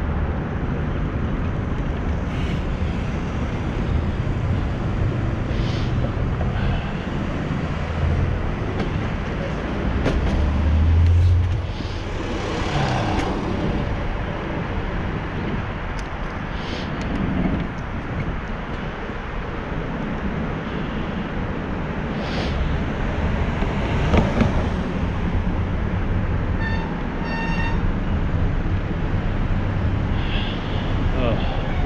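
City traffic heard from a bicycle riding downtown: a steady rushing noise with the low rumble of passing buses and cars. One vehicle passes louder about eleven seconds in, and a short run of beeps sounds near the end.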